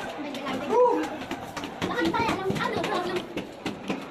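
Voices of other people in the background, children's voices among them, talking and calling out, with one high rising-and-falling call about a second in.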